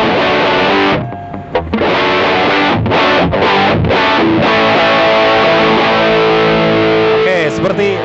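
Squier Bullet Series Stratocaster with Kin's pickups, on its bridge pickup, played through distortion: chords with short breaks about a second in, a run of short stabbed chords around three to four seconds, then long ringing chords that stop near the end.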